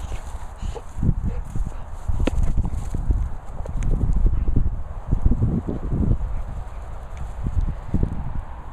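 Uneven low thudding and rumbling from a handheld camera being carried fast across a grass field: the camera-holder's footsteps with wind and handling noise on the microphone.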